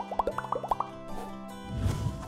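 Cartoon bloop sound effects: a quick run of short, rising-pitched blips in the first second, over light background music, then a whoosh near the end.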